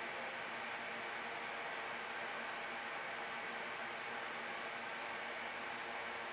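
Steady hiss with a faint, even hum underneath: constant background noise with no distinct events.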